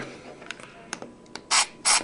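Silicone lubricant sprayed from an aerosol can into a Rubik's cube in two short hisses in the second half, after a few light clicks.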